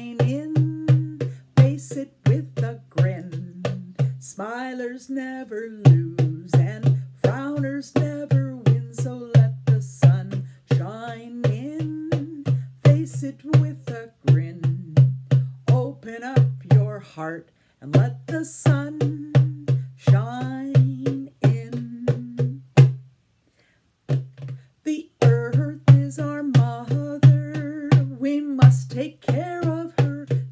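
A woman singing to her own drum, beaten in a steady rhythm of about three strikes a second. The drum drops out for a couple of seconds about four seconds in, and there is a short full stop a little after twenty-three seconds.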